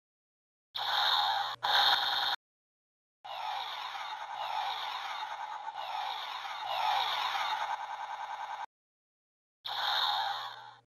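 Dubbed-in battle sound effects for a stop-motion fight: two short loud bursts, then a long layered stretch full of falling sweeps, and another burst near the end, each cut in and out sharply with dead silence between.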